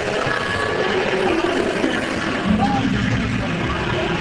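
Studio tour tram running, a steady mechanical noise with indistinct voices over it.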